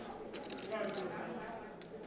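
Faint background talk and room murmur, with a few small clicks.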